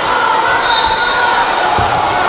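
Two dull thumps of wrestlers' feet landing on the padded mat as they grapple and step, about a second apart, under a steady background of shouting voices from coaches and spectators.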